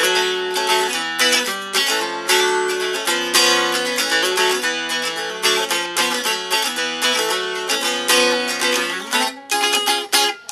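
A three-string cigar box guitar strummed rapidly with a pick in a steady rhythm, moving between chords every second or so.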